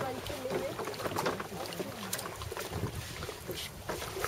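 People talking indistinctly over a low steady hum, with scattered small knocks.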